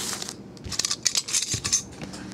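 Foil trading-card pack wrappers crinkling as the packs are handled and stacked on a table, in a string of short, crackly bursts.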